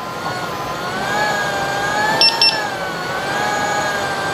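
Electric unicycle hub motor whining, its pitch slowly rising and falling with speed, with a quick double beep about halfway through: the power alarm warning of high power draw.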